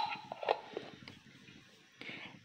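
A metal spoon clinks once against the cooking pot with a short ring, followed by a few faint taps, as ground black pepper is added to the soup.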